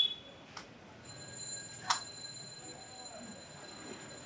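Faint high-pitched ringing that holds steady from about a second in, with a few sharp clicks, the loudest about two seconds in.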